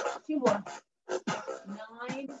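A voice in short, broken phrases, with music.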